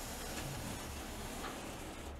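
A few faint computer-keyboard key clicks over a steady hiss of microphone and room noise.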